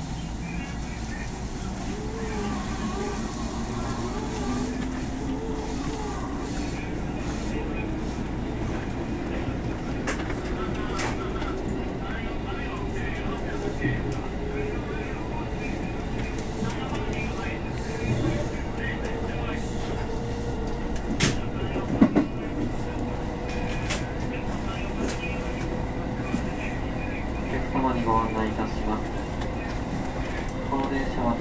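JR West 221 series electric train running, heard from inside the front car: the traction motor and gear whine climbs slowly in pitch as the train accelerates, over a steady rumble of wheels on rail. Two sharp clacks come about two-thirds of the way in, the second the loudest sound.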